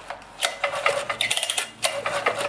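Husqvarna K760 cut-off saw's two-stroke engine pulled over twice on its recoil starter, spinning freely with a rapid clatter and not firing. The easy pull means very low compression, which the owner blames on a scored piston and cylinder.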